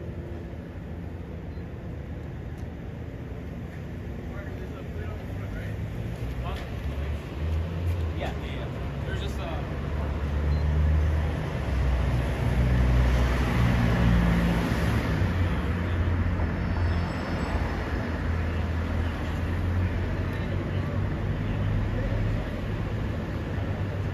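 Road traffic: a steady low rumble of vehicles that swells about halfway through as a car goes by, then settles.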